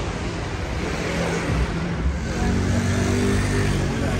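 A motor vehicle's engine running close by on a city street, growing louder about halfway through over a steady background of street noise.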